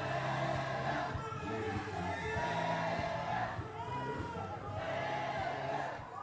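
Music with a singing voice and held bass notes, over the noise of a crowd.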